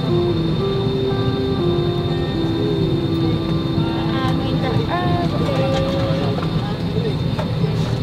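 Steady low hum inside an airliner cabin while it is still at the gate for boarding, with a slow melody of long held notes over it and faint passenger chatter.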